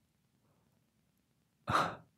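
A man's single short, breathy sigh near the end, after a near-quiet stretch.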